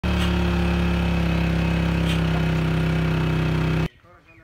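Engine running steadily at a constant speed, cutting off abruptly near the end.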